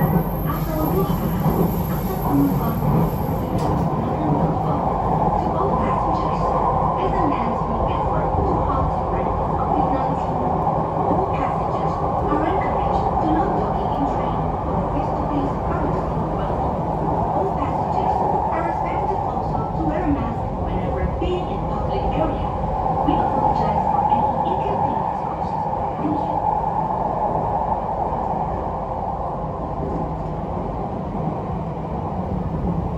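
Jakarta MRT train running along the elevated track, heard from inside the carriage as a steady rumble of wheels and running gear. A thin high whine fades out about four seconds in.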